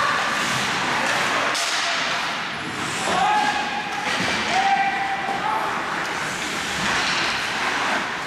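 Ice hockey game in an indoor rink: a steady wash of skates and play on the ice, with two long, held shouts from a voice about three and four and a half seconds in.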